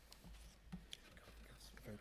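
Near silence: faint murmured voices and a few small clicks over a steady low room hum.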